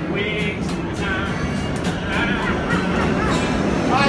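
Acoustic guitar strummed in a steady rhythm, with a man's voice carrying the tune over it.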